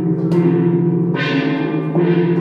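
Suspended gongs struck with mallets, their tones ringing on and overlapping. A fresh strike lands about a third of a second in and a louder, brighter one a little past the middle, each blooming over the sustained hum of the earlier strokes.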